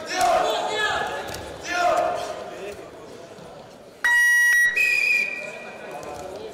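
Spectators and coaches shouting, then about four seconds in a loud electronic buzzer sounds for under a second, followed at once by a referee's whistle held for about a second, signalling the end of the wrestling bout.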